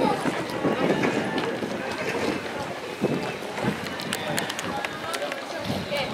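Many footsteps of a group walking on a dirt street, with scattered sharp shoe clicks and scuffs, over the chatter of voices in the crowd.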